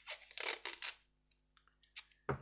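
Masking tape pulled off its roll and torn, a rasping rustle lasting about a second, followed by a few light clicks.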